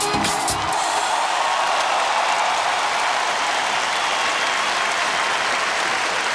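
A pop song's final beat stops under a second in, and a large audience breaks into steady, sustained applause.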